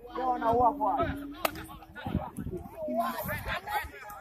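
Voices of people at a football pitch talking and calling out, with one sharp crack about one and a half seconds in.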